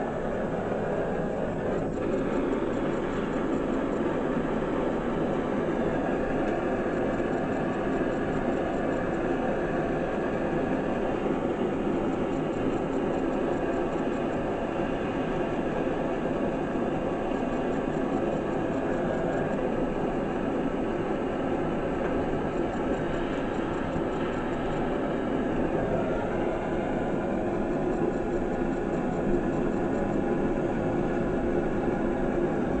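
Hand-held gas torch on a screw-on gas cartridge, its flame running steadily.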